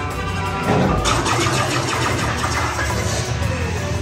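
Music over sci-fi dark-ride sound effects: a steady low rumble, with a sudden rushing burst about a second in and a falling tone near the end.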